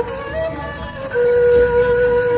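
Flute melody: a few short, shifting notes, then one long held note from about a second in.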